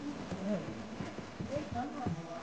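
Faint voices talking in the background in a small room, with no clear words and no other distinct sound.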